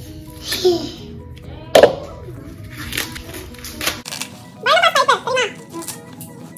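Background music with a single sharp snap from husking an ear of sweet corn, the loudest sound, about two seconds in, and a few lighter clicks after. Near the end a toddler babbles briefly.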